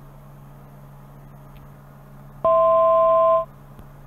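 Steady hum of the Pilatus PC-12NG's turboprop in the cockpit, then about two and a half seconds in a loud electronic tone of two steady pitches held together for about a second before cutting off. The tone is the altitude alert, sounding with a thousand feet to go to the selected altitude.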